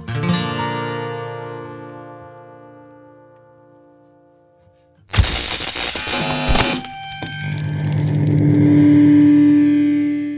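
A last acoustic guitar chord strummed and left to ring, fading away over about five seconds. Then a sudden loud outro sting of distorted, effects-laden music, ending on a held note that swells near the end.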